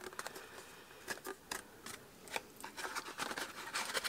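Light scrapes and small clicks of cardstock being handled as a paper milk carton is pushed down into its card carrier.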